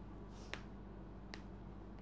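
Two short, sharp clicks about a second apart over a faint, steady low hum.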